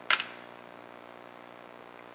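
A screwdriver working a nylon retainer bolt on an X-ray tube head gives a quick, sharp double click just after the start. After that there is only a faint, steady background hum.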